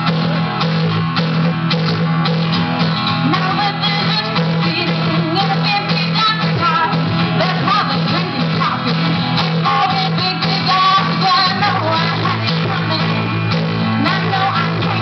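Acoustic guitar strummed in a steady rhythm, live through a PA, in an instrumental stretch of a country song.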